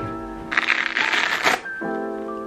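Hook-and-loop (Velcro) fastener on a backpack flap pulled open: one rasping rip lasting about a second, starting about half a second in, over background music.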